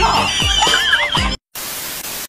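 Background music with a horse-whinny sound effect, cut off suddenly about 1.4 seconds in by a burst of TV-static hiss.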